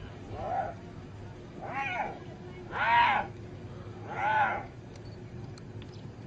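A hyena giving four high, whining calls, each rising and then falling in pitch; the third is the loudest.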